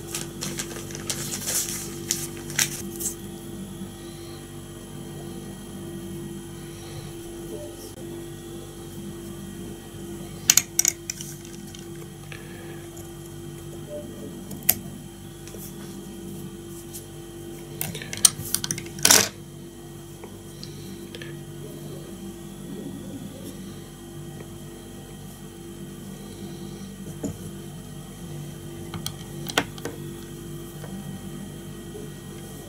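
Steady low hum with occasional sharp clicks and taps of fly-tying work as red dubbing is wound onto a streamer hook, the loudest clicks about ten seconds in and again around eighteen to nineteen seconds.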